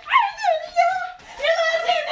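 A woman crying out in a very high, strained voice: two long cries with a short break between them, the first falling in pitch.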